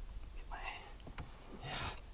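Quiet, breathy muttered speech, two soft words about half a second in and near the end, over a low steady rumble, with a few faint clicks around the middle.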